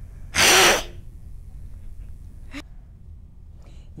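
A child's voice giving one short, very loud, breathy roar-like shout into a close microphone, about half a second long. A faint click follows a couple of seconds later.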